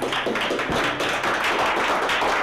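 Several people clapping their hands, a fast, uneven run of claps.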